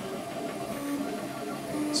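Ultimaker 3D printer running, its stepper motors giving a run of short steady tones that jump from one pitch to another as the print head moves.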